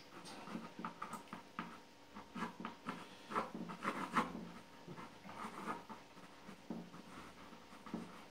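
Drawing pencil scratching on a white primed painting panel, a run of short, irregular strokes, faint.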